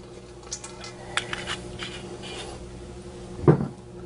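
Kitchenware being handled on a counter: scattered light clinks and clicks over a steady low hum, with one louder thump about three and a half seconds in.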